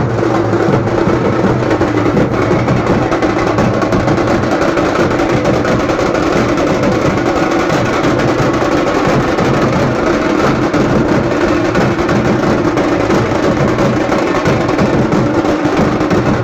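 Several stick-beaten drums played together in a loud, dense, unbroken rhythm.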